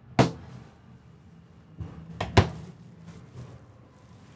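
Flip-up overhead wooden cabinet door pulled shut with a sharp knock. About two seconds later come two more quick clicks, close together.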